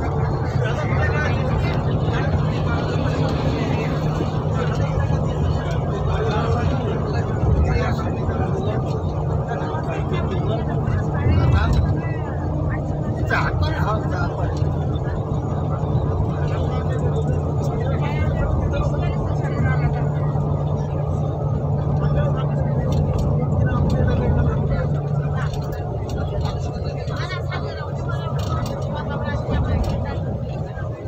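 Steady engine and road hum heard from inside a moving vehicle's cab while driving, with voices over it.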